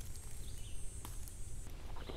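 Quiet woodland ambience: a low steady rumble with a faint high, thin hiss that fades near the end, and a soft click about a second in.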